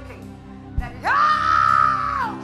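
A person's loud, high-pitched scream, rising suddenly about halfway in, held steady for about a second and then falling away. Under it, steady held chords of background music, with one low thump just before the scream.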